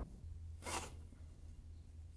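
Scythe blade swishing through tall grass as hay is cut by hand: one brief, faint swish about two thirds of a second in, over a low steady hum.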